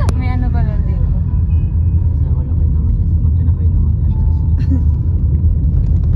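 Steady low rumble of road and engine noise inside a moving car's cabin, with a brief falling tone in the first second.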